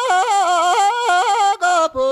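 High solo voice singing a Tibetan folk song unaccompanied, the melody full of quick ornamental turns and stepping down in pitch, with a brief break near the end.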